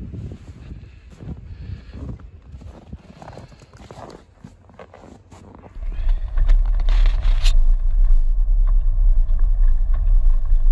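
Footsteps in deep drifted snow, a step every half second or so. About six seconds in, a loud, steady low rumble of wind buffeting the microphone takes over.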